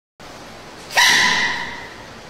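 A baby giant panda sneezing once, about a second in: a sudden loud, high sneeze whose tone trails off over most of a second.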